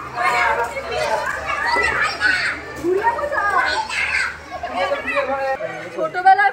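Children's high voices shouting and chattering at play.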